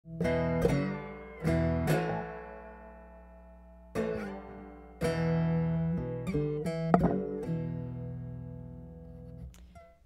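Cigar box guitar playing a short intro phrase: plucked notes struck in pairs and then a quicker run, each left to ring and slowly fade, the last ones dying away near the end.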